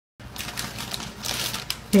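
Crinkly rustling of a thin plastic bag as a cat drags it across a hard floor: an irregular run of crackles and clicks.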